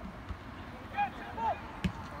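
Two short, high-pitched shouts on a soccer pitch about a second in, then a single sharp thud of a soccer ball being kicked near the end.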